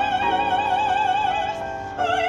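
A classical female voice sings one long, high held note with a wide vibrato, easing off near the end, over sustained piano chords.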